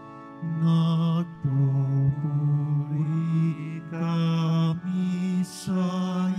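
Sung Lenten Gospel acclamation at Mass: slow, chant-like phrases sung over held low accompanying notes, with short breaks between phrases.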